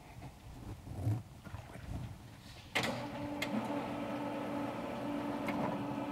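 Sliding lecture-hall chalkboard panels moving in their tracks: a few light knocks, then about three seconds in a steady whirring run starts suddenly and carries on.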